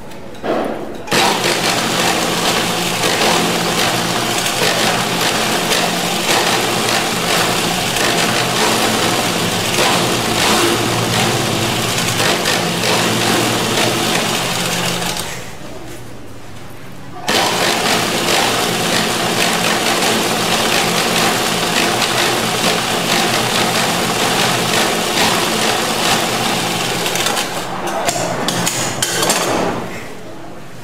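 Hasti sewing machine stitching at a steady speed, the needle and feed clattering evenly over a low running hum. It stops for about two seconds midway, runs again, then slows in stutters and stops near the end.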